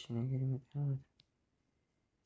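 A man's voice speaking for about a second, then a single short click of a stylus tapping the tablet screen.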